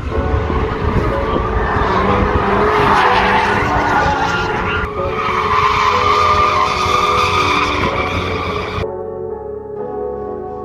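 A car being driven hard on the race circuit: engine noise with tyre squeal, loud throughout. About nine seconds in the car sound cuts off abruptly and only background music remains.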